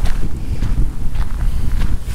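Strong wind buffeting the microphone: a loud, steady, rough low rumble.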